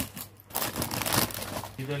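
Clear plastic covers on boxed sarees crinkling as the boxes are handled and shifted, many small irregular crackles over about a second.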